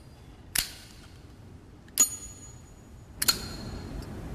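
Flip-top metal lighter lid being flicked open and snapped shut: three sharp metallic clinks, each with a brief bright ringing, a little over a second apart.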